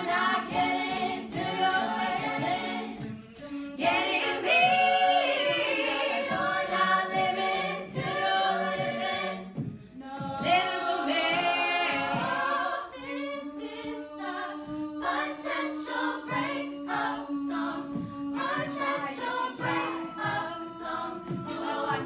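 Women's a cappella group singing in close harmony with no instruments. From about 13 seconds in, one low held note runs under the voices alongside short percussive clicks in a steady rhythm.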